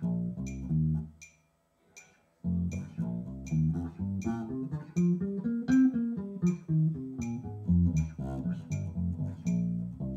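Unaccompanied electric bass guitar playing a C minor pentatonic scale, plucked note by note: a short phrase, a brief pause, then a run that climbs the neck and comes back down. A metronome clicks steadily throughout, a little under a second apart.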